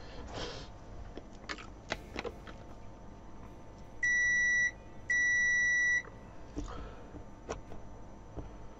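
Digital multimeter's continuity beeper sounding twice, a steady high beep of under a second each, about four and five seconds in, as the test probes are held on a diode to check it for a short. Light clicks of the probes on the parts come before and after.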